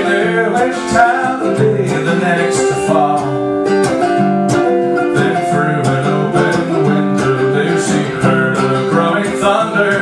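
Archtop guitar strumming chords in an instrumental break of a song, with a steady rhythm of strokes.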